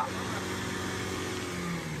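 Engine of a Great Wall Cannon pickup running steadily as the truck works its way up a steep mud slope.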